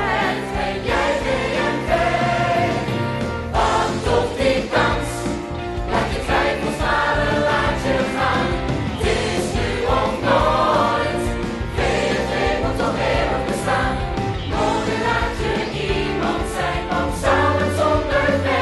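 Musical theatre ensemble number: a choir of men and women singing together with instrumental accompaniment.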